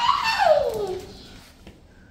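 A nervous dog whining: one high call that slides down in pitch over about the first second.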